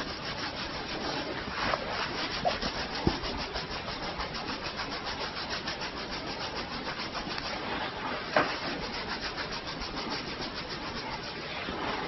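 Fingertips kneading and rubbing a person's scalp through the hair in a scalp massage, making a fast, even, scratchy rustle with a few louder taps.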